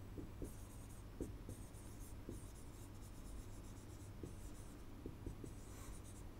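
Stylus writing on an interactive display: faint, intermittent scratching strokes with small taps as a word is handwritten.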